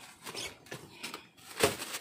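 Plastic sack rustling and crinkling as it is handled, in short scattered bits, with one louder crinkle near the end.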